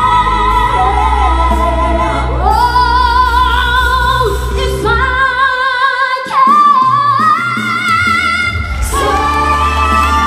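Four female voices singing live in harmony into microphones, holding long notes with vibrato over an instrumental backing. A little past halfway the backing's low end drops out for about a second, then the voices come back louder and climb to a higher held note.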